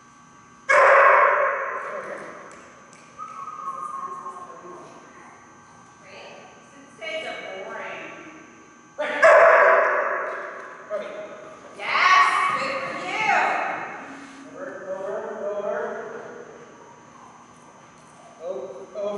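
A dog barking and yipping in a large, echoing hall, mixed with a man calling out; the loudest calls come about a second in, at about nine seconds and at about twelve seconds.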